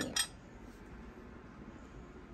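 A metal teaspoon set down on a porcelain saucer: one short, sharp clink right at the start.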